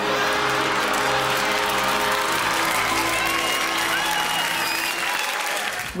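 Studio audience applauding, a dense steady wash of clapping that thins out near the end, with music playing underneath.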